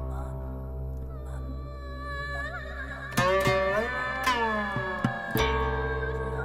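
Guqin music: plucked notes that ring on and slide in pitch, over a steady low drone. Sharp plucks come about three, four and five seconds in.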